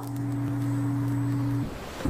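A man humming a long, steady "mmm" at one unchanging pitch, which stops shortly before the end.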